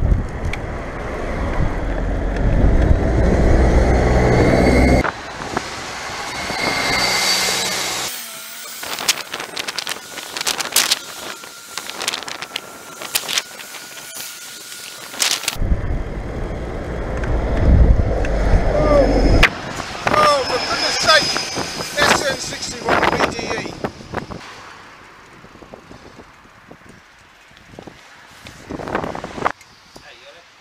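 Wind buffeting the microphone of a bicycle-mounted camera while riding, with a double-decker bus running close alongside. Between these come stretches of clicking and rattling from the bike.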